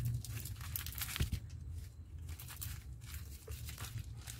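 Thin plastic polybag crinkling and tearing as it is cut open with dull scissors, a run of small irregular crackles and rustles with one sharper snap about a second in.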